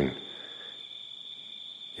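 Crickets calling in a steady, unbroken high-pitched trill.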